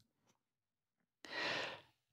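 A man taking one audible breath, about half a second long, a little past the middle; the rest is near silence.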